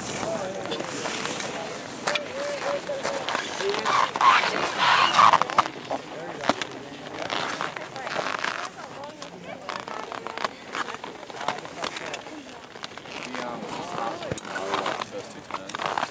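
Indistinct talking from people on the slope, mixed with the rough scraping hiss of skis cutting through mogul snow.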